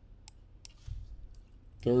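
Three faint, separate clicks from a computer mouse and keyboard as a value is entered. A man's voice starts near the end.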